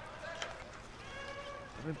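Faint ambience of an outdoor bandy rink during play, with faint distant voices.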